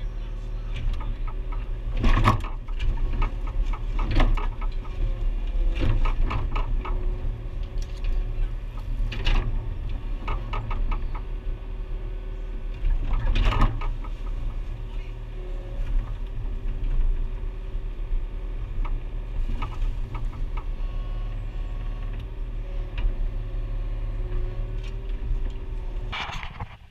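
A mini excavator's diesel engine runs steadily, heard from inside the cab. Several loud knocks come as the bucket digs into the soil, the loudest about two, four, six, nine and thirteen seconds in.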